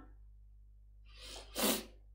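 A woman's short, sharp burst of breath about one and a half seconds in, after a quiet pause, starting with a softer intake.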